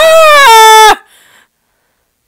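A person's long, high-pitched vocal cry, held on one drawn-out note that rises a little and falls back, cutting off about a second in.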